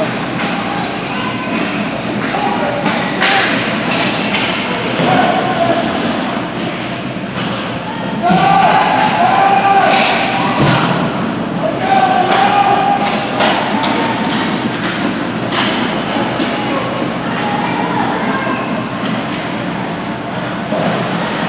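Ice hockey play: many sharp clacks of sticks and puck and thuds against the rink boards, with spectators shouting at intervals.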